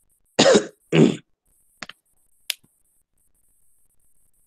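A person coughing twice in quick succession, followed by a few faint clicks.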